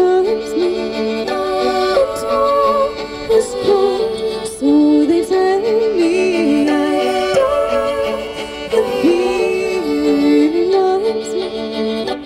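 A fiddle played live with a woman's wordless singing over it, amplified through a busker's microphone and small amplifier: held notes and sliding melodic lines that run continuously.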